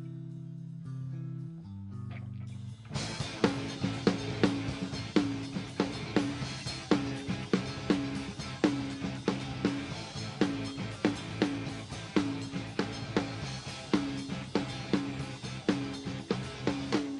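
A live punk rock band starts a song. For about three seconds the guitar and bass hold low sustained notes, then the drums and the full band come in together with a fast, steady beat.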